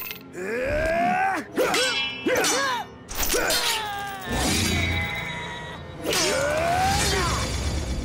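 Cartoon fight sounds: strained grunts and cries from the fighters, sharp hits and metal clangs as a katana blade clashes against a nunchuck chain, over dramatic action music.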